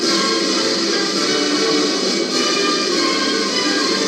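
Instrumental music with held notes playing from a seven-inch vinyl picture disc on a turntable.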